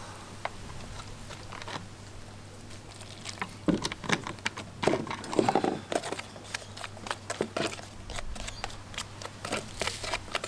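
Fingers mixing Stone Fix rock-adhesive powder and water into a slurry in a plastic tub: irregular scrapes, crackles and taps against the container, busier from about three seconds in, over a steady low hum.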